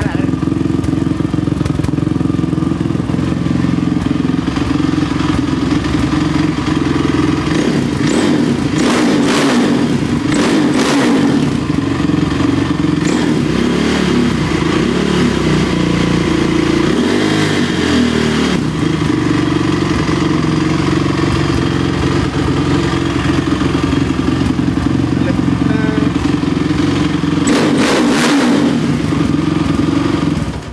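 Honda ATV engine running steadily, blipped to higher revs a few times around eight to eleven seconds in and again near the end.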